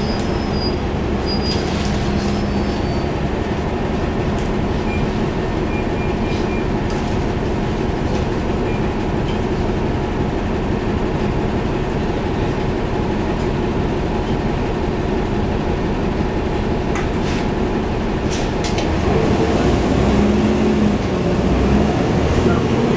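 Inside a 2011 NABI 40-foot transit bus under way: the Cummins ISL9 inline-six diesel and its radiator fan running steadily over road rumble, growing louder near the end as the engine pulls harder.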